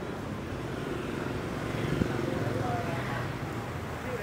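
Motorbikes running as they pass along a street, a steady low engine rumble with faint voices around it. A single sharp click about two seconds in.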